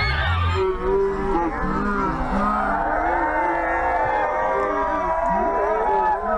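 A crowd of several voices booing: long drawn-out low calls at different pitches overlapping one another.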